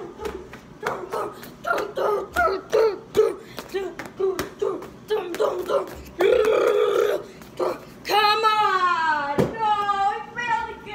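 A boy's voice performing a wordless nonsense song: a quick string of short pitched vocal sounds, then a loud held shout about six seconds in and a long note sliding down in pitch near the end, cut by a thump.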